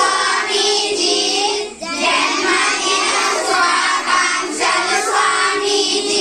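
A group of children chanting Telugu birthday greetings in unison, in sung-out phrases with short breaks about two seconds in and again about four and a half seconds in.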